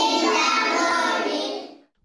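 A class of young children singing together in unison. Their voices fade out shortly before the end.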